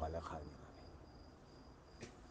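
A cricket chirping faintly and steadily, a thin high note repeated in short pulses. A voice finishes a word in the first half second.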